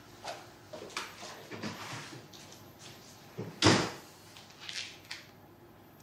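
Footsteps walking off, then a door shutting about three and a half seconds in, the loudest sound here, followed by a few fainter knocks.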